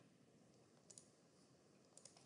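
Near silence with a few faint computer mouse clicks: a pair about a second in and one more near the end.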